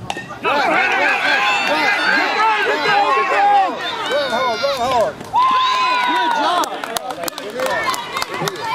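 Many high-pitched children's voices cheering and yelling together, overlapping, during a play in a youth softball game. They break off briefly a little before halfway, then pick up again with one long held shout.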